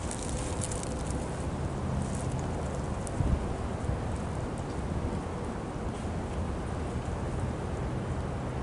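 Wind and handling noise on a handheld camera's microphone: a steady low rush with faint rustling and a small knock about three seconds in.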